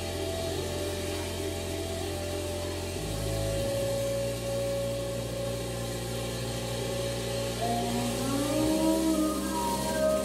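Sustained electronic drone from synthesizers and effects: a low bass hum that steps to a new pitch about three seconds in and changes again near the end, under a steady mid tone, with higher gliding tones coming in over the last couple of seconds.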